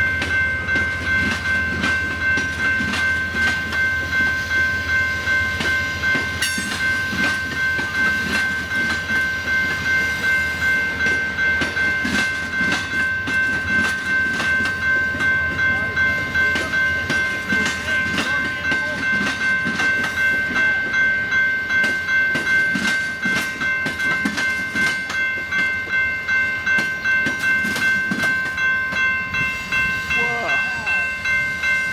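Amtrak Superliner passenger cars rolling past with a low rumble and clicking of wheels on rail, while a grade-crossing bell rings in a steady, even rhythm throughout.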